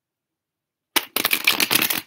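Tarot deck being shuffled by hand: a sharp click about a second in, then a dense run of rapid card-on-card flicks.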